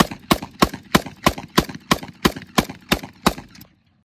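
Micro Draco AK-pattern pistol in 7.62×39 firing a steady string of about a dozen rapid semi-automatic shots, roughly three a second. The shooting stops shortly before the end.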